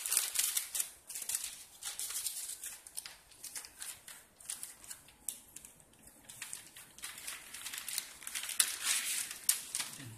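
Plastic wrapping and paper rustling and crinkling as packed documents are handled, in irregular bursts, loudest right at the start and again a second or two before the end.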